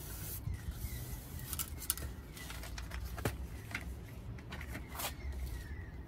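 Scattered light clicks and knocks of a plastic door sill trim strip being handled and set down along the door opening, its plastic clips being lined up with their holes in the body. A steady low rumble runs underneath.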